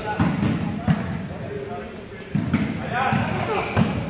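A volleyball being struck several times during a rally, with sharp slaps that ring on in an echoing gymnasium. Players' voices call out between the hits.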